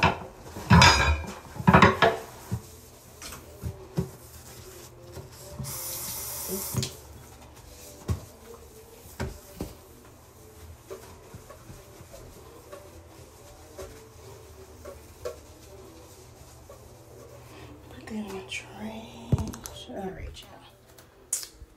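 Hard knocks and clatter against a bathroom sink, loudest in the first two seconds. A hiss lasts about a second, six seconds in, followed by soft rubbing and light taps as the basin is wiped clean of cleaner residue.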